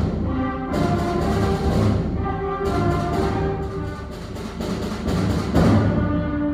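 School concert band playing: flutes, clarinets and brass holding chords, with a few percussion strikes.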